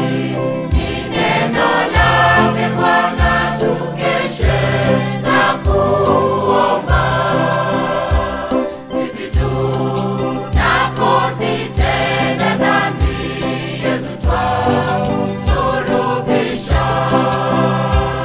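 A mixed choir of men and women sings a Swahili gospel song over an instrumental backing with a low bass line and a steady beat.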